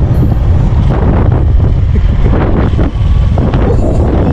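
Loud, steady wind buffeting the microphone of a camera carried on a moving motor scooter, a low rumbling roar that flutters without a break.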